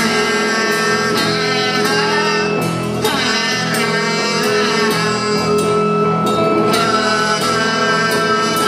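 A live garage-rock band playing loud: a singer's voice over electric guitar, bass and drums with cymbals.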